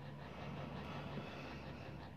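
Faint, steady background noise with a low hum, with no distinct event.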